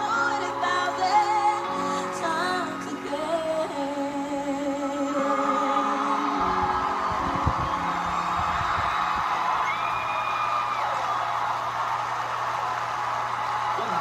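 A girl singing a ballad over a backing track, ending on long held notes with vibrato about six seconds in, heard through a TV speaker. A studio audience then cheers and applauds, with a single whoop partway through.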